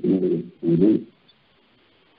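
A man's voice speaking for about the first second, in two short phrases, then a pause of about a second.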